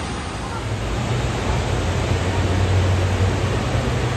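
Indoor water park ambience: a steady rush of splashing water with a murmur of crowd noise across the hall. A low rumble comes in about a second in.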